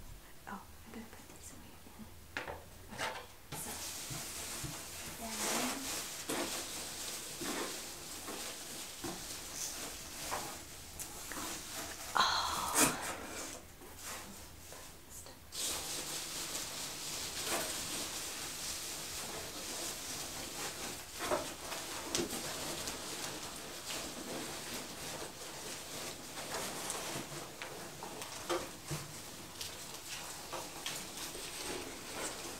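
Hands rummaging through a cardboard shipping box filled with foam packing peanuts and shredded kraft paper: continuous rustling and crinkling with scattered light clicks, plus a brief louder sound about twelve seconds in.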